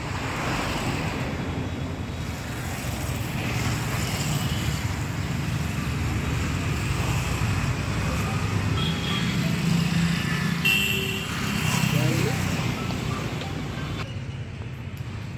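Street traffic noise: a steady rumble of passing road vehicles, with a few short high-pitched tones in the second half.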